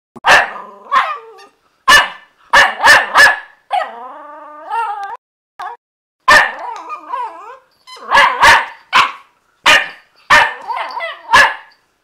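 Jack Russell Terrier puppy play-barking: sharp barks in quick runs of two or three, with one longer drawn-out cry about four seconds in.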